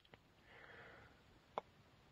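Near silence in a pause of speech, with a faint breath drawn in and one small click about one and a half seconds in.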